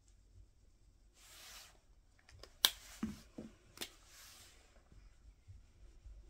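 Dry-erase markers working on a whiteboard: a short scratchy marker stroke about a second in, two sharp clicks of a marker cap with small knocks between them a little past halfway, then another short stroke.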